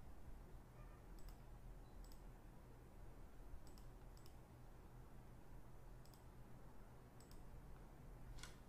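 Near silence: room tone with a low steady hum and about half a dozen faint, sharp clicks at irregular intervals.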